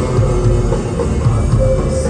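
A post-punk band playing live and loud: electric guitars, bass guitar and drum kit keeping a steady driving beat.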